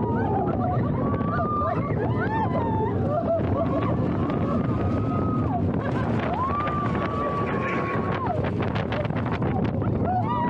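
Riders on the Slinky Dog Dash roller coaster whooping and screaming in several long held cries, over a steady rush of wind on the microphone and the rumble of the coaster train on its track.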